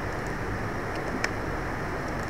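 Steady rushing background noise, strongest in the low range, with a single sharp click a little over a second in.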